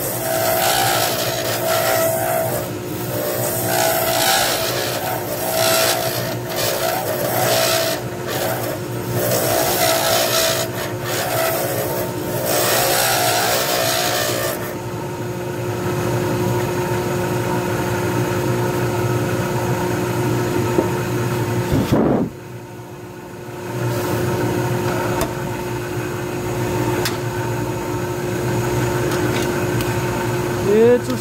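Wood lathe spinning a pen blank while a hand-held turning tool cuts it, giving an uneven hissing cutting noise in strokes over the machine's steady hum. About halfway through the cutting stops and the lathe runs on alone with a steady hum, which drops sharply for about a second and a half about two-thirds of the way in.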